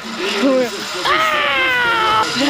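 A person's voice: a short exclamation, then about a second in a long, high, drawn-out yell that slowly falls in pitch.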